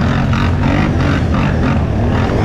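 Utility quad (ATV) engine running steadily at race pace, a loud continuous rumble with a quick, even pulsing about five times a second.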